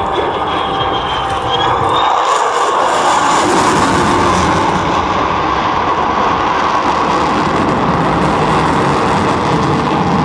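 Lockheed Martin F-35A fighter's Pratt & Whitney F135 turbofan: loud, steady jet engine noise during a display pass, swelling slightly a couple of seconds in.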